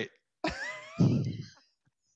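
A man laughing: a breathy burst about half a second in that trails off into low chuckles before the end.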